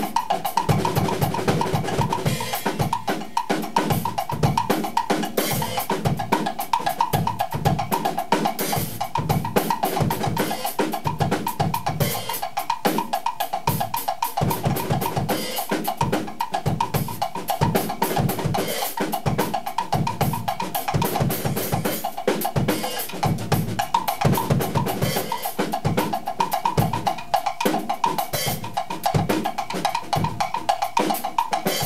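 Two drummers playing a groove together on drum kit and percussion: a steady run of bass drum, snare and rimshot strokes with cymbals, dense and unbroken.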